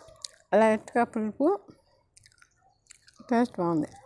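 A woman speaking in two short phrases with a pause between them.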